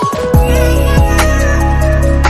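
Background music with an electronic beat: deep kicks that drop in pitch, over held notes.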